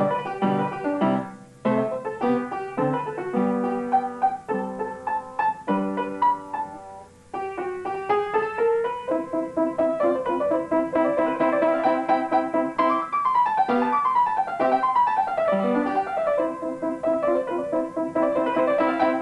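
Upright piano played solo by a child: a steady flow of notes with a brief lull about seven seconds in, and falling runs of notes in the second half.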